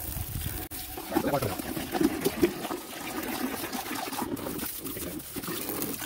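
Water from a solar pool heater's garden-hose outlet pouring steadily in a thin stream into a plastic bucket.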